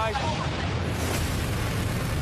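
A big ocean wave breaking in heavy surf: a continuous rumbling roar of crashing whitewash with deep low-end weight.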